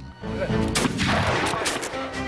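Black-powder musket fire: a ragged volley of several quick shots starting about half a second in and lasting over a second, with background music underneath.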